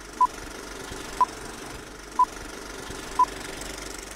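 Old-film countdown leader sound effect: four short, even beeps, one a second, over the steady whirring and crackle of a film projector.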